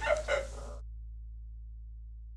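Two short vocal sounds from a man, then the sound cuts off abruptly, leaving only a steady low hum.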